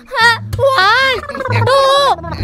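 A woman wailing loudly: a short cry, then one long, wavering wail, in a comic exaggerated fit of crying.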